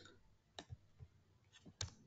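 About five faint clicks from a computer mouse and keyboard while text is selected for deletion, the sharpest one just before the end.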